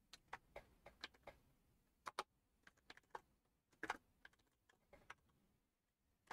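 Computer keyboard being typed on: a scattering of separate, irregularly spaced keystrokes, faint and with short gaps between them.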